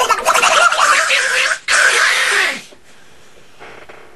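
A man's Donald Duck impression, made by forcing air through a pocket between his tongue and left cheek: a long run of unintelligible duck talk, a brief break about a second and a half in, then another short burst that stops well before three seconds in.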